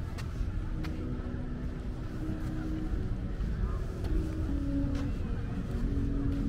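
City street ambience: a steady low rumble of road traffic, with people's voices talking.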